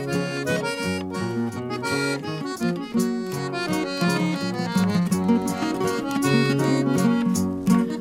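Accordion playing the instrumental introduction of a Mexican ranchera, over strummed guitar accompaniment and a bass line, before the singer comes in.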